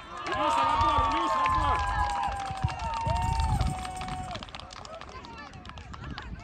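Several high-pitched children's voices shouting at once in long, drawn-out calls for about four seconds, then dying away.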